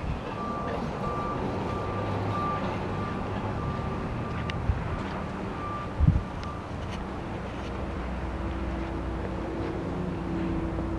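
A pickup's electronic warning chime beeps over and over at one steady pitch while the driver's door stands open, and stops about six and a half seconds in. Under it runs a steady low rumble, and there is a single thump about six seconds in.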